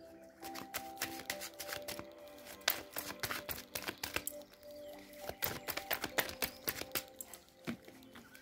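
A deck of tarot cards being shuffled by hand, making many quick, irregular card clicks and flicks. Soft background music with held notes plays underneath.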